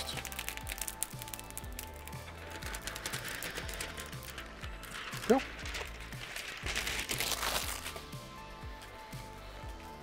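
Protective plastic film being peeled off a new LCD screen panel: a run of small crackles and ticks, then longer rasping stretches as the film comes away.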